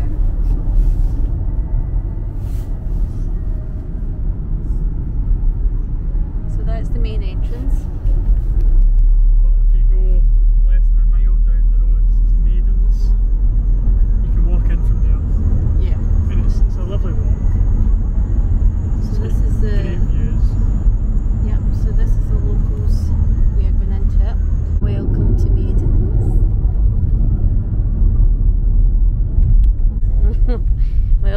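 Road noise inside a moving car: a steady low rumble of tyres and engine, growing louder about eight seconds in.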